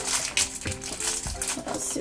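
Soft background music with steady held notes, over a thin plastic wrapper crinkling in a few short crackles as hands pull a small plastic toy cap out of it.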